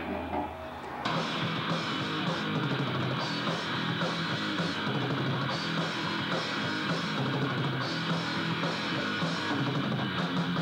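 Live metal band playing: about a second in, after a brief thinner lull, the full band comes in with distorted electric guitars and a drum kit and keeps going.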